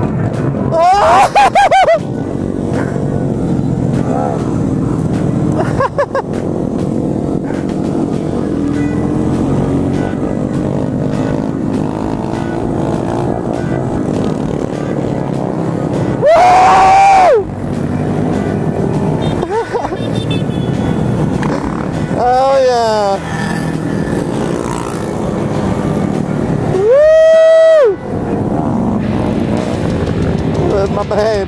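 Engines of a large pack of small motorcycles running as the group rides off together. Several loud, drawn-out whoops ring out over them, one about a second in and the rest in the second half.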